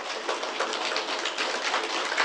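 Steady background hiss of a large hall's room tone between spoken remarks, with no distinct event.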